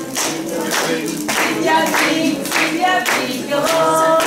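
A group of children and adults singing a song together while clapping in time, about two claps a second.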